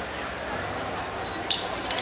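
A lull between sung lines in a live band performance: the music drops to a low lingering wash, broken by one sharp clink about one and a half seconds in.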